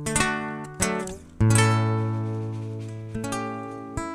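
Acoustic guitar playing a short, slow phrase of about four chords, each left to ring and fade, the loudest with a deep bass note about a second and a half in. It is played as the tune the radio used to open with at six in the morning.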